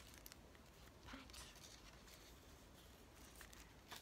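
Near silence with a few faint, soft taps and rustles: fingertips patting tissue-paper squares down onto glue on a paper plate.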